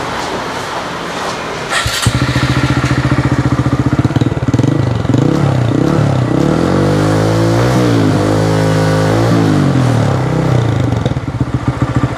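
Honda MSX125SF single-cylinder engine starting about two seconds in and idling through an OVER Racing dual-outlet exhaust. It gets a few short throttle blips, then one longer rev that rises and falls back to idle.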